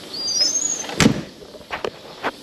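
A semi-truck cab door being shut: one sharp, loud slam about halfway through, followed by a couple of faint clicks, with a brief high rising chirp just before it.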